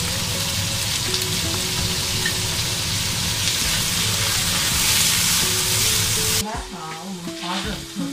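Sliced pork frying in hot oil in a wok, a loud steady sizzle, stirred with a wooden spatula. The sizzle cuts off abruptly about six seconds in.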